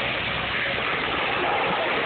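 Hyundai tracked excavator's diesel engine running steadily under a continuous rushing hiss of water, fitting a fire hose stream sprayed onto a burned house.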